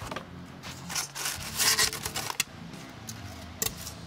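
Packing being handled in a cardboard box: a polystyrene foam slab and paper rubbing and scraping against the cardboard in several loud, noisy bursts, the loudest in the middle. Background music with low steady notes plays underneath.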